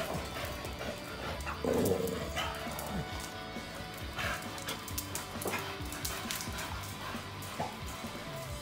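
Staffordshire bull terriers playing, with one short bark about two seconds in, over steady background music.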